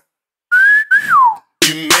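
A wolf whistle: a short high note, then a second note that slides down. Near the end the band and a man's singing come in.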